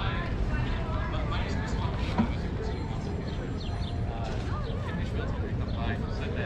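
Voices of people talking, not close enough to make out, over a steady low rumble of wind on the microphone of a moving bicycle; a single short knock about two seconds in.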